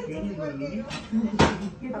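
Voices talking in the background, with a short click a little before the middle and a louder sharp knock about one and a half seconds in.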